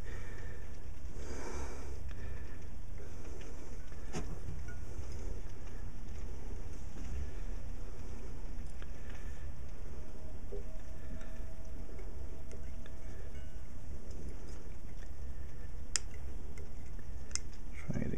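A steady low hum throughout, with a few faint sharp clicks of fine steel music wire and pliers being handled, the last two near the end.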